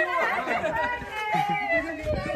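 Several people talking and exclaiming over one another at once, an excited group chatter.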